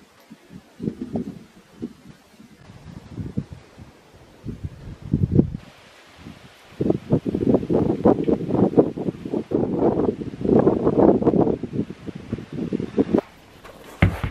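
Wind buffeting the microphone in irregular gusts, light at first and strongest in the second half.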